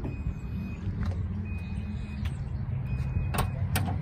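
A Chevrolet Silverado's power tailgate closing: a steady low motor hum with three high beeps spaced about a second and a half apart, then two sharp clicks near the end.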